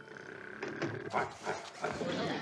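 A man snoring in his sleep: a series of short, rough snores, starting about half a second in.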